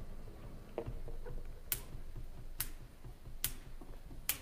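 Three sharp, evenly spaced clicks a little under a second apart: a drummer's count-in with drumsticks before the band comes in.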